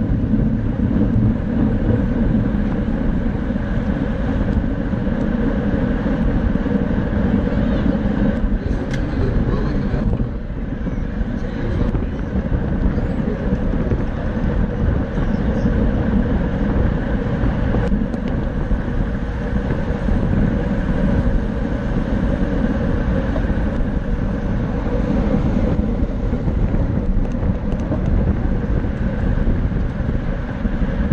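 Steady wind noise on the microphone of a camera mounted on a racing bicycle moving at about 20 to 28 mph, mixed with tyre and road noise, briefly easing about ten seconds in.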